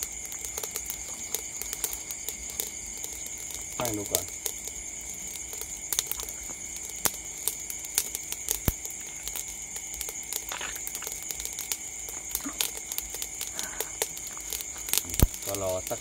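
Charcoal fire crackling and popping under a whole fish grilling in a wire basket, with scattered sharp clicks and a louder pop near the end. A steady high chorus of night insects runs behind it.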